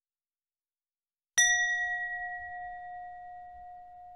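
A single bell ding sound effect, struck about a second and a half in and ringing out with a slow fade.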